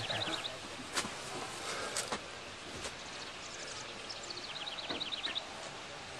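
A small songbird's quick trill of evenly repeated high chirps, heard at the start and again near the end, over quiet outdoor background noise. A few light knocks sound in between.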